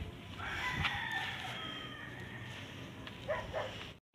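A rooster crowing once, faintly, one long call of about two and a half seconds, with a short sound near the end.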